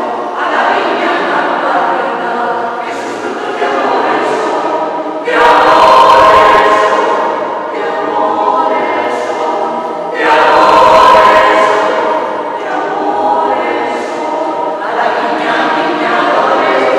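Mixed choir of men's and women's voices singing in a large church, sustained chords rising to two louder swells about five and ten seconds in.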